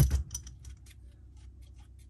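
A sharp metal clank, then a socket ratchet wrench clicking faintly and quickly, about seven clicks a second, as it backs off the nut that holds the tapered drive gear on a raw water pump shaft.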